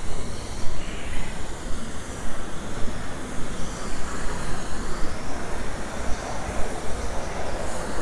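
Steady rumble of a passing vehicle, with a faint high whine that drifts slowly in pitch.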